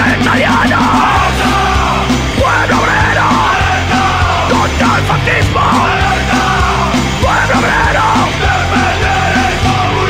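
Loud punk rock song: distorted guitars, bass and drums at a steady beat, with a yelled voice over them.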